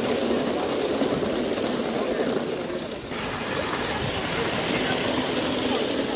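Background chatter of onlookers mixed with the rapid rattling run of a gauge 1 live-steam train along its track. The sound changes abruptly about three seconds in.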